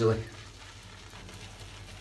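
Boar-bristle shaving brush swirled over a hard puck of shaving soap in its tub, a faint, steady wet scrubbing as the brush loads with soap.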